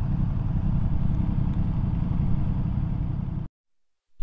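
Ducati Multistrada V4S's V4 engine running while the motorcycle is ridden, a steady low rumble heard from the rider's camera, which cuts off suddenly near the end.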